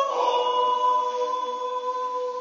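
Swiss yodel choir of men's and women's voices singing a wordless yodel (a Jutz) a cappella, holding a sustained chord that slowly grows quieter.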